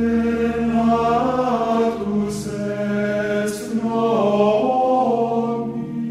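Choral chant music: voices singing a slow, smoothly moving melody over a held low note, which drops out about halfway through.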